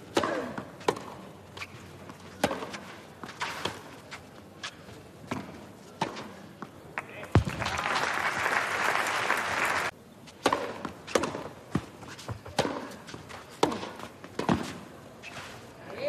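Tennis ball struck back and forth with rackets in a clay-court rally: sharp hits roughly a second apart, with bounces between. About halfway through, a stretch of crowd noise rises and cuts off suddenly, before the hits resume.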